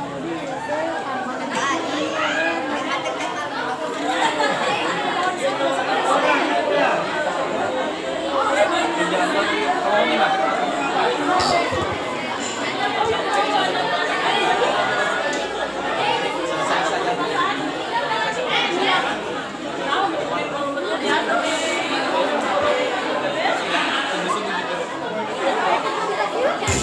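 Many voices chattering at once: a steady, fairly loud babble of talk with no singing or instruments.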